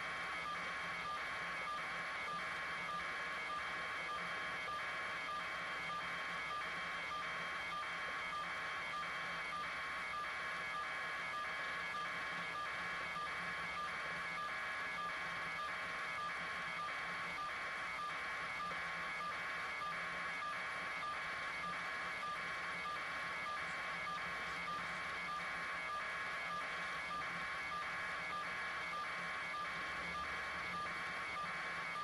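An electronic tone pulsing evenly, about two pulses a second, over a constant hiss.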